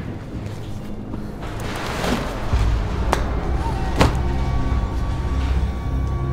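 Background music, with two sharp snaps about three and four seconds in as a foam-filled latex casting is pulled free of its plaster mold.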